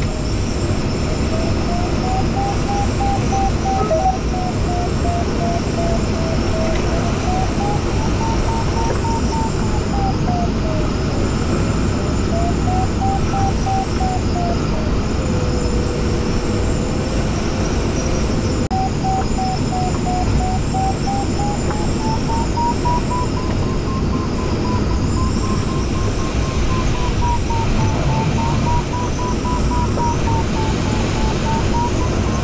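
Glider variometer tone wavering slowly up and down in pitch as it tracks the sailplane's vertical speed, dropping lower for a few seconds about halfway through and climbing higher near the end. Under it is steady airflow noise around the Jantar Std. 2's fiberglass canopy and cockpit.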